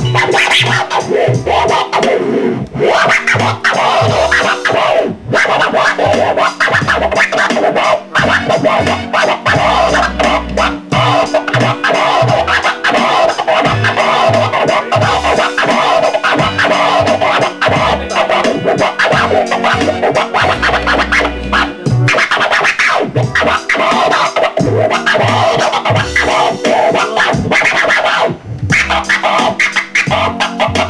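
Vinyl record scratched on a turntable, cut in and out with the DJ mixer, over a looping hip-hop beat with a repeating deep bass line.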